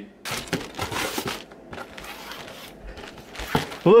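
Irregular rustling and knocking handling noises, with crinkling.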